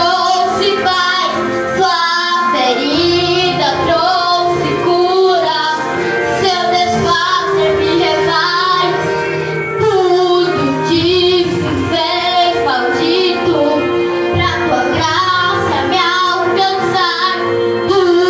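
A young girl singing a Brazilian gospel song in Portuguese over a recorded backing track, her voice amplified through a PA speaker.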